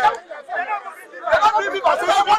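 Several men talking over one another in a crowd, no words clear. The voices are softer for the first second and louder from about a second and a half in.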